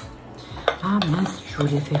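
Makeup brush and hard cosmetic containers clicking and clinking as they are set down and picked up, with two or three sharp clicks, the first about two-thirds of a second in. A short murmur from a woman's voice falls between the clicks.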